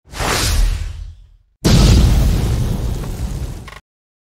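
Two loud whoosh-and-boom transition sound effects. The first swells and fades within about a second and a half. The second starts suddenly, runs about two seconds, and cuts off near the end.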